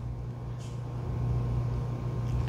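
A low, steady hum under faint background noise, growing slightly louder over the two seconds.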